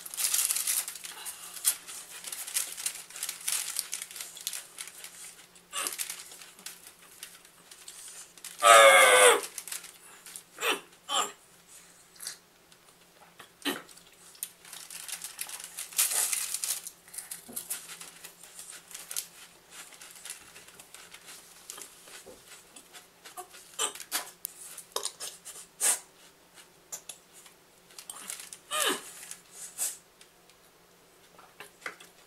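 Saltine cracker sleeve wrapper crinkling as crackers are pulled out, with chewing on dry crackers. A brief vocal sound about nine seconds in.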